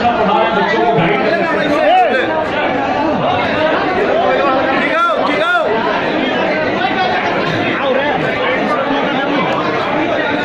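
Many people talking at once in a large hall: a steady, overlapping crowd chatter.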